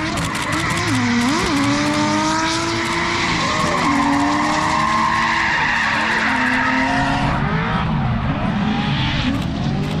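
A drift car's engine revving hard, its pitch dipping and climbing again several times as the throttle is worked, over the hiss and squeal of tyres sliding sideways. The tyre noise eases about seven seconds in.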